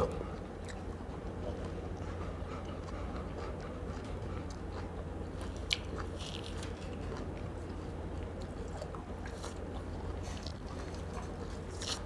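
Faint small ticks and rustles of an orange being peeled by hand, the pith picked off the segments, over a steady low hum, with one sharper click about halfway through.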